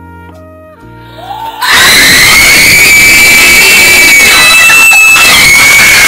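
A few notes of music, then about a second and a half in, sudden, extremely loud screaming from girls that rises in pitch and holds high, so loud it distorts: shrieks of excitement.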